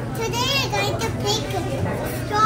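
Children's high-pitched voices chattering and calling out in a busy room, over a steady low hum.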